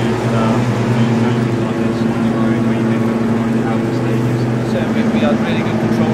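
A steady low machine hum held at a couple of fixed pitches, with faint, indistinct voices over it.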